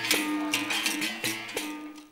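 Capoeira music led by a berimbau: its steel string is struck in a steady rhythm, the note stepping between two pitches. The music fades out near the end.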